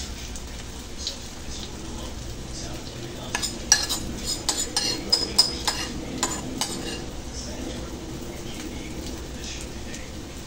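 Ground pork, potato and egg batter frying in hot oil in a nonstick pan, a steady sizzle as it is spooned in. A metal spoon clinks and scrapes against the bowl and pan in a run of sharp taps between about three and seven seconds in.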